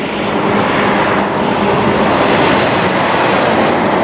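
A truck passing on the road: a steady rush of tyre and engine noise that rises over the first second and then holds.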